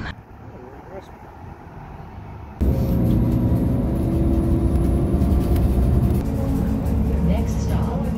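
Quiet street and riding noise, then about two and a half seconds in an abrupt cut to the loud, steady low rumble of a city bus driving, heard from inside the bus, with a few steady engine tones held under it.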